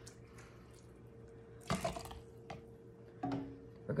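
A ladle scooping through meat stew and broth in a stainless steel stockpot: faint liquid sloshing, with one louder splash about two seconds in, over a faint steady hum.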